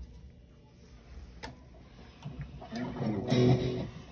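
Jackson Performer electric guitar played through a pedalboard: after a click, a few notes start about two seconds in and build to a louder chord near the end that is cut short.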